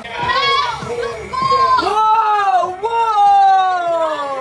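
Several young people's voices shouting and yelling, with long drawn-out cries whose pitch bends and falls; the longest starts about three seconds in and slides down.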